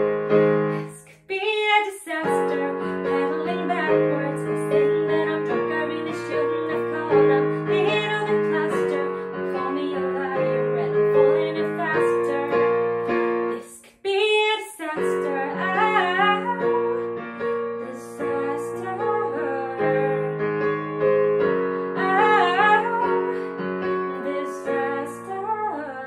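A woman singing a slow pop song while accompanying herself on piano, her voice wavering with vibrato over steady chords. The piano drops out briefly twice, about a second in and again about fourteen seconds in, leaving the voice on its own before the chords come back.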